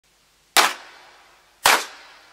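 Two sharp percussive hits, the first about half a second in and the second about a second later, each with a long fading tail. They are the opening drum or clap hits of a dance remix.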